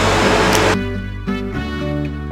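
Laughter over busy room noise, cut off under a second in by background music that starts abruptly: a melody of distinct notes changing pitch over a steady beat.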